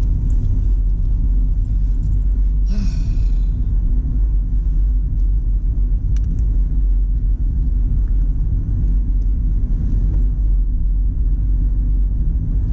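Steady low rumble of a car's engine and tyres heard from inside the cabin as it drives along a street, with a short burst of hiss about three seconds in.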